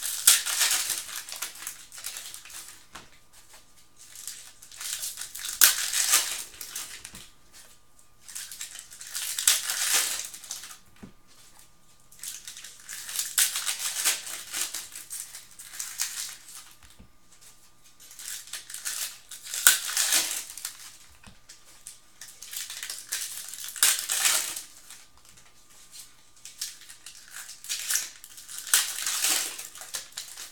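Foil trading-card pack wrappers (2015 Panini Prizm football) crinkling as they are torn open and crumpled. The crinkling comes in about seven bursts, roughly every four to five seconds, one for each pack opened.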